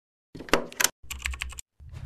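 Intro sound effect of rapid clicking like computer keys being typed, in two short bursts, followed near the end by a louder deep boom that carries on.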